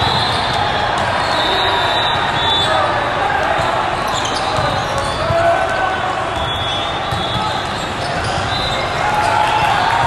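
Volleyballs being hit and bouncing with sharp thumps, short high squeaks of shoes on the court, over a steady hubbub of voices from players and spectators in a large, echoing hall.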